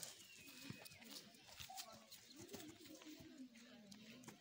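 Near silence: quiet open-air ambience with faint distant voices and bird calls.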